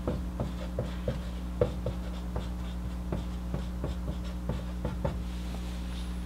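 Marker writing on a whiteboard: a quick, irregular run of short strokes and taps, several a second, as capital letters are printed.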